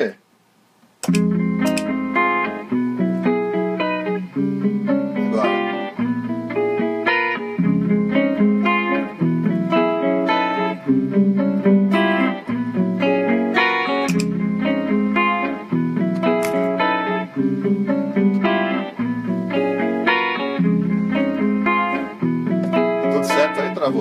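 Archtop electric guitar playing a cycle of superimposed triad chords, starting about a second in after a short pause, with the harmony changing every second or two over a low bass note.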